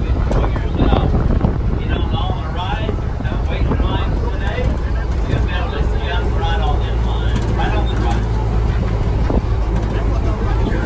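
Open-air passenger tram running steadily, with a constant low rumble and wind buffeting the phone's microphone, under indistinct chatter from passengers.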